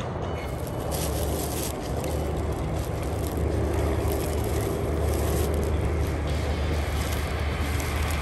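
Steady low rumble of road traffic, with the crackle and rustle of black plastic trash bags being dug through by hand.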